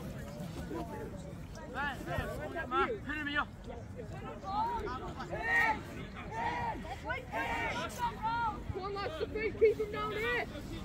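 Scattered shouts and calls from youth rugby players and touchline spectators across an open pitch, with a laugh near the end.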